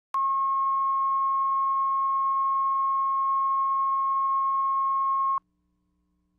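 Steady 1 kHz line-up test tone, the reference tone laid with colour bars at the head of a broadcast videotape for setting audio levels. It sounds as one unwavering beep and cuts off suddenly about five seconds in.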